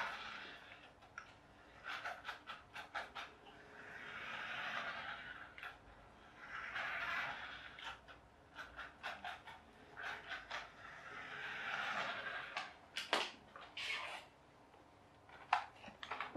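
Toy radio-controlled Formula 1 car running in short bursts on a wooden floor: its small electric motor and drivetrain rise and fade with each burst of throttle, about five times, with scattered sharp clicks in between. The car is struggling, running on old AA batteries.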